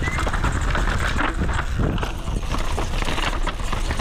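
Downhill mountain bike clattering over rocks at speed: a rapid, irregular rattle of tyres, chain and suspension hitting the rough ground, over a low rush of wind on the microphone.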